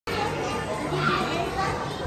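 Indistinct murmur of several voices and small children chattering, heard in a large hall, with faint music in the background.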